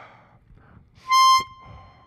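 Chromatic harmonica sounding one high blown note, held for about half a second and then fading, after a soft breath. It is played as a demonstration of blowing gently into the harmonica.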